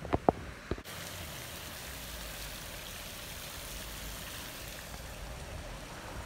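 A few short clicks in the first second, then a steady rushing background noise with no distinct events.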